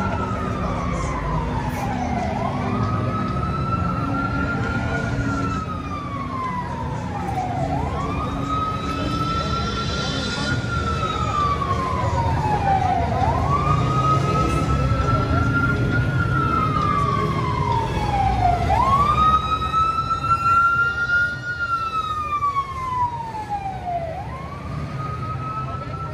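Emergency vehicle siren sounding a slow wail: the pitch snaps up quickly, then slides slowly down, repeating about every five and a half seconds, over steady low street noise.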